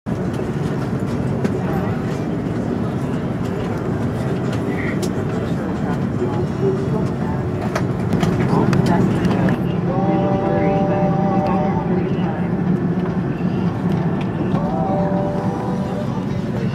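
Airbus A330-200 airliner cabin at the gate: a steady low hum of the aircraft's ventilation, with passengers' voices, mostly in the second half.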